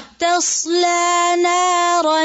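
A woman's voice reciting Quranic verse in melodic, chanted tajweed style. It comes in about a quarter second in and holds long, steady notes.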